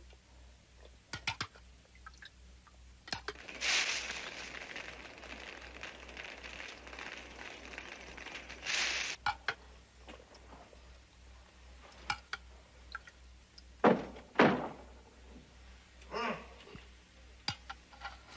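Small sounds of someone eating soup: a spoon clicking against a bowl, a hissing rustle lasting about five seconds, then two sharp thuds a little past the middle.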